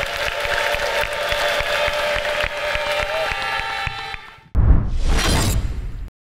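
Background music fading out, then about four and a half seconds in a sudden loud crash-like transition sound effect lasting about a second, as the video cuts to a title card.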